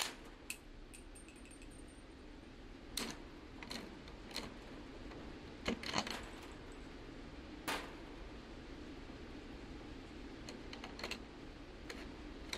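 Scattered metallic clicks and taps of a rifle suppressor being handled and fitted to the muzzle of a bolt-action rifle, over a faint steady background hum.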